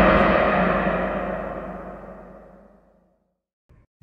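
A deep, gong-like sound effect ringing out and fading away, dying to silence about three seconds in.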